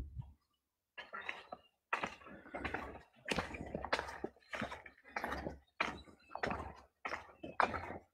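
Footsteps crunching along a sandy, gravelly dirt path, about two steps a second.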